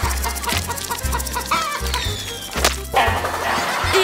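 Chicken clucking as a comic sound effect: a quick run of short clucks about a second in, over background music.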